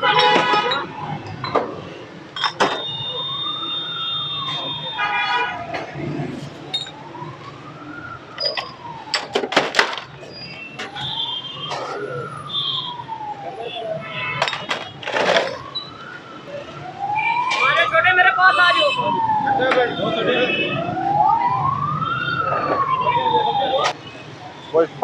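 An emergency vehicle's siren wailing, its pitch rising and falling slowly in a cycle of about four seconds, over street and crowd noise. A few sharp clinks of glass cut in about halfway through.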